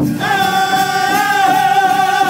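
Powwow drum group: several voices singing a high, sustained melody over a steady, even drumbeat, after a brief gap at the very start.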